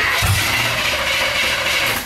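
Chevrolet El Camino engine held on the throttle, a steady loud running drone with a low rumble in the first half second. It runs under throttle now that the fuel pump is feeding it, but it will not idle when let off, which is put down to the carburetor needing a rebuild.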